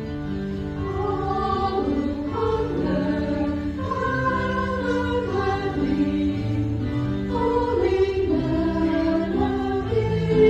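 Church choir singing, several voices together, growing a little louder about a second in.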